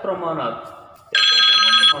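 A loud electronic tone made of several steady pitches at once, like a phone ringtone or beep. It starts suddenly about a second in and cuts off sharply under a second later, after a few words of a man's speech.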